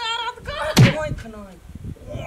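A single loud, sharp thump a little under a second in, the loudest sound here, set among a person's wailing, pained vocal sounds that fall away after it.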